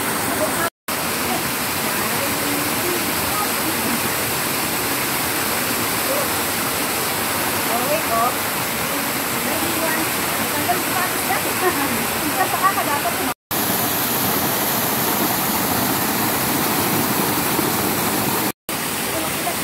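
Steady rush of water from a rocky mountain stream, with faint, indistinct voices in the middle part. The sound cuts out for an instant twice, just under a second in and about thirteen seconds in.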